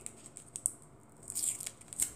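Faint rustling and small clicks of plastic packaging being handled and picked at while being opened, in two short spells about half a second in and again around a second and a half.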